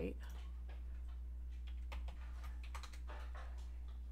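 Computer keyboard keys and mouse clicks tapping irregularly and faintly over a steady low hum.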